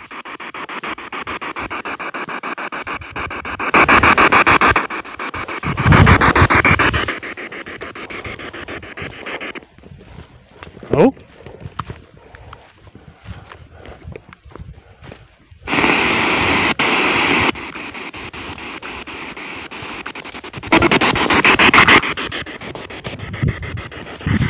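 P-SB7 spirit box sweeping through radio frequencies: a rapid, choppy stream of static and clipped radio-voice fragments, with louder stretches. It drops out for several seconds midway when the device switches off, then starts up again.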